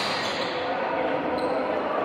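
Echoing sports-hall ambience on a badminton court, with indistinct voices in the background and one light tap about a second and a half in.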